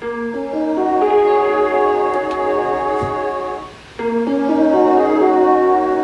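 Wonky, deliberately corny electric piano chords from the first-bank electric piano sound of a Miracle Piano keyboard, run through cassette processing. A held chord builds up note by note, breaks off just before four seconds in, and a second held chord follows.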